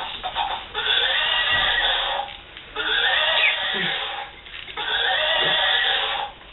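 A horse whinnying three times in a row, each whinny lasting over a second with short gaps between.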